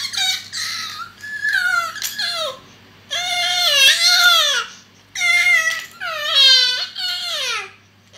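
Infant crying in a run of short, wavering wails, about six of them, each dropping in pitch as it trails off.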